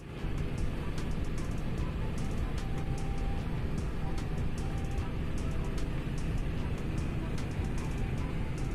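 Steady in-cabin road and wind noise of a Suzuki Alto with a swapped-in Honda L13A engine cruising at highway speed, about 113 km/h with the engine at around 2,400 rpm, under background music.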